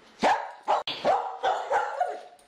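A dog barking, a quick run of about five sharp barks.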